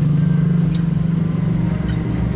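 A motor vehicle engine running close by: a loud, steady low hum with a fast even pulse.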